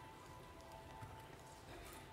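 Quiet stage with faint, scattered footsteps of dancers' shoes on the stage floor, under a soft sustained orchestral note left after a held chord fades.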